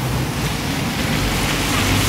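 Steady street background noise: an even hiss from road traffic with a low hum underneath.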